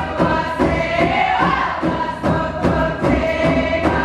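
A group of women singing a chant together in unison over a steady hand-drum beat, about two to three strokes a second.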